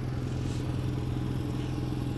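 A steady low engine hum with no change in pitch or level.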